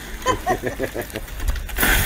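A person laughing in quick short bursts, then a sudden loud rush of noise near the end as the bicycle and rider plough into a snowbank.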